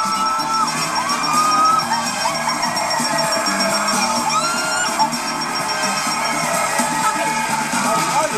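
Upbeat music over a studio audience cheering, clapping and whooping.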